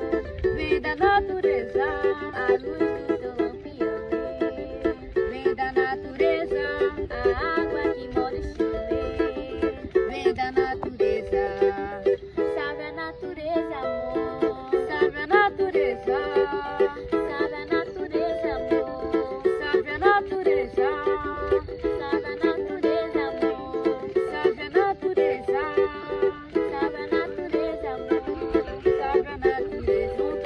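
Small acoustic string instrument strummed in a steady rhythm, playing a run of chords.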